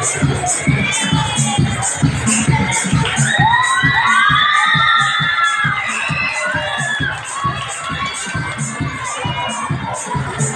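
A crowd of children shouting and cheering over loud dance music with a steady beat. The high shouts swell to their thickest around the middle.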